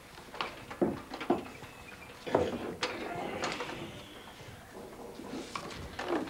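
Small children playing with toys: a string of light knocks and clatter from small wooden furniture and toy dishes being moved about in the first half, with faint child voices.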